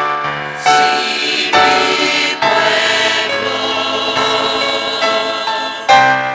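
Mixed church choir of women and men singing a hymn in parts: a few short sung chords, then one long held chord from about two and a half seconds in.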